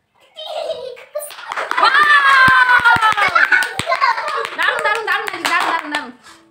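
Children shouting and squealing as they play, one long squeal falling slightly in pitch, over hand claps. About two and a half seconds in comes a quick run of about six dull thumps.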